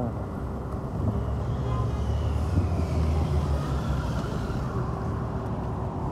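Silver Ferrari sports car driving past: a low engine rumble that swells to its loudest about halfway through and then eases off, with a faint falling whine above it, over general street traffic.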